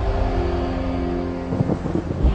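Movie-trailer sound design: a deep boom at the start, then a low rumbling drone under steady held tones.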